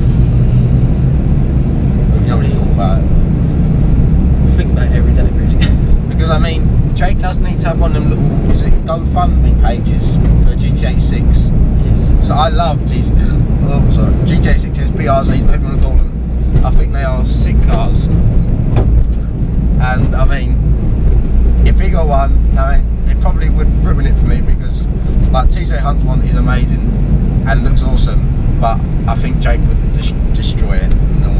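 Steady low rumble of engine and road noise inside a moving car's cabin, under ongoing conversation.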